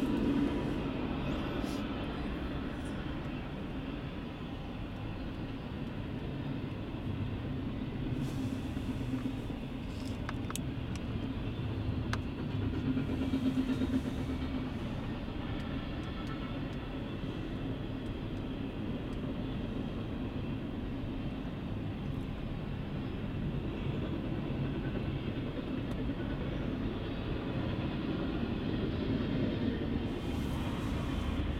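Intermodal freight train cars (double-stack containers and truck trailers on flatcars) rolling past, a steady rumble of wheels on rail with a few faint clicks about ten seconds in.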